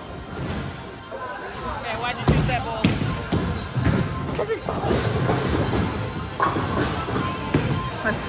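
Bowling alley din: several heavy thuds and knocks of bowling balls from about two seconds in, over background music and voices.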